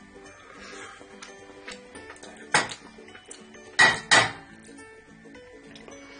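A utensil knocks against the stainless-steel inner pot of a rice cooker in three sharp clicks: one about two and a half seconds in, then two close together around four seconds. Faint background music plays under them.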